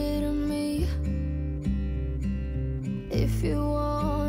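Background music: a song led by strummed acoustic guitar over changing bass notes.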